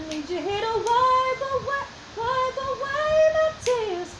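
A woman singing solo a cappella, with no accompaniment: two held melodic phrases with a short breath between them about halfway through.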